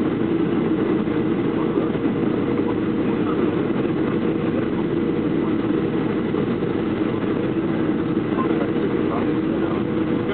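Steady cabin noise of a Boeing 737-500 descending on approach, heard from a window seat over the wing: CFM56 turbofan engines and rushing air, even in level, with a faint steady high tone.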